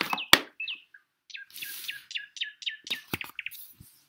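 A small bird chirping: a few single falling chirps, then a quick run of about eight falling chirps between about one and three seconds in. A sharp knock comes about a third of a second in, and a couple of clicks come near the end.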